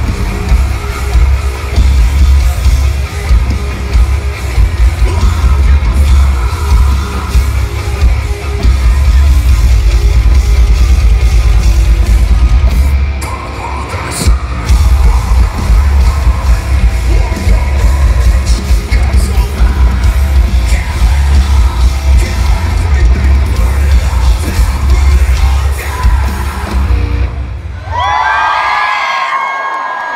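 Metalcore band playing live through an arena PA, with screamed vocals over distorted guitars and drums, recorded from the crowd with heavy, overloaded bass. Near the end the music stops, leaving a few yells.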